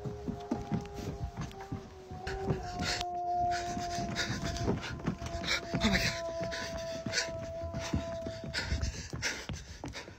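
A person panting hard while hurrying away on foot, with many quick thumps and rustles, after a laugh. Under it runs a steady two-note droning tone.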